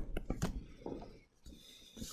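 A pen or stylus tapping and scratching on a writing surface during handwriting: a quick run of about four clicks, then scratchy rubbing strokes.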